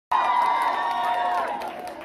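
Concert crowd cheering and screaming, with many high voices held and sliding down in pitch, dying away near the end.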